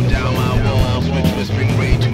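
Rock music from a full band: electric guitar over sustained bass notes and regular drum hits, with sliding guitar or vocal lines above.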